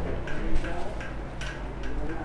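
A few faint, unevenly spaced ticks and taps of light footsteps over a steady low hum.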